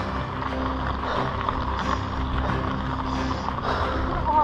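Trek Remedy 8 mountain bike rolling down a gravel track: a steady low rumble of tyres on gravel and wind, with background music playing over it.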